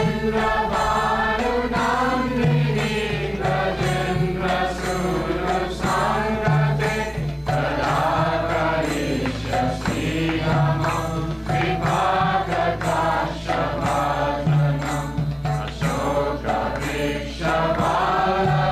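Kirtan: devotional chanting sung over a steady percussive beat and a sustained low accompaniment.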